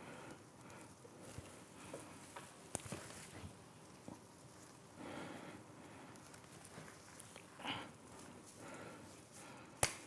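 Faint handling noise from work on a ponderosa pine bonsai: soft rustling of pine needles and branches with a few small clicks, and one sharp click near the end.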